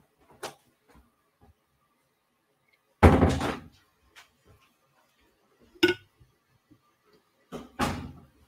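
A door closing with a sharp thump about three seconds in, followed by a shorter knock and a few faint clicks.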